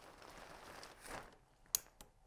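Westcott shoot-through umbrella being opened by hand: a faint rustle of its fabric and frame, then a single sharp click near the end as it locks open.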